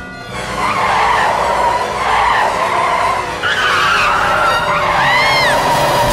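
Car tyres screeching in a long skid, with a short rising-and-falling squeal near the end, over music.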